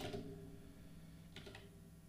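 Computer keyboard keystrokes, a short cluster of clicks about one and a half seconds in, over a faint steady hum of room tone.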